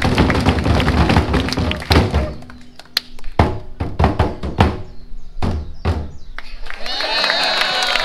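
Drumming on large stage drums: a dense, fast run of beats for the first two seconds or so, then single hard strikes, a few a second with uneven gaps. A voice comes in near the end.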